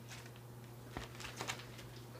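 Faint clicks and light rustling of a vinyl LP in its sleeve being handled and set down, over a steady low hum.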